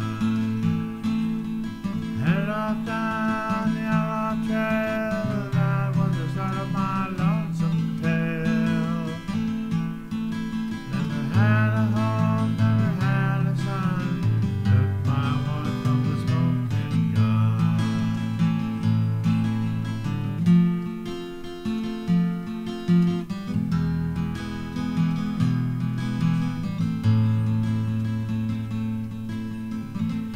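Solo acoustic guitar playing an instrumental break in a country-style ballad, strummed and picked chords with melody notes over them.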